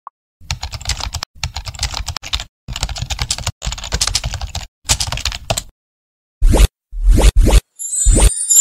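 A typing sound effect: rapid keyboard clicks in five runs, with short pauses between them, matching text that is typed out on screen. Near the end come three short, very loud hits with deep bass.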